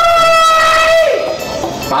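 A man's long, high-pitched held cry, one steady note that slides down and trails off about a second in.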